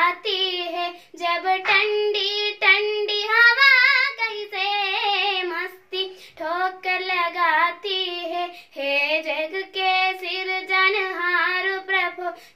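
A young girl singing a Hindi poem to a melody, unaccompanied, in phrases broken by short breaths, her voice wavering on the held notes.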